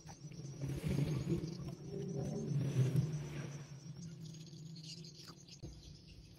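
A hand squeezing and mashing overripe bananas in a plastic tub of liquid: irregular wet squelching and sloshing that tapers off after about four seconds.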